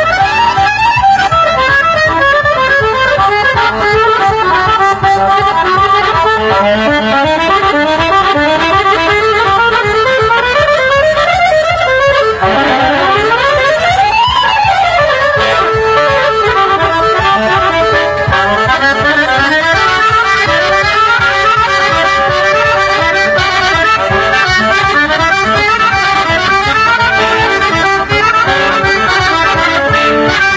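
Accordion trio playing fast Bulgarian folk music in unison, dense with quick runs of notes. About halfway through, a rapid run sweeps up and straight back down.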